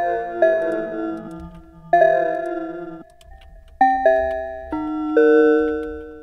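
Bell-like pluck chords from the Nexus 4 software synthesizer, played on a MIDI keyboard: four or five chords, each struck and left to ring and fade, the later ones following more quickly.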